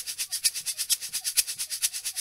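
Hand-held tube shaker shaken in a fast, even rhythm of about eight strokes a second.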